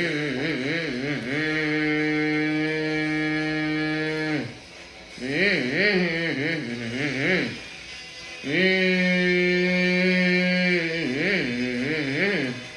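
A person humming monster-truck engine noises with closed lips. Long held notes alternate with stretches where the pitch quickly wavers up and down like an engine revving, broken by short pauses about four and a half and eight seconds in.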